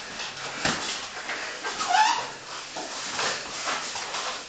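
Two grapplers' bodies and clothing scuffing and shifting on foam mats, with hard breathing in repeated noisy rushes, and a short high rising whine about two seconds in.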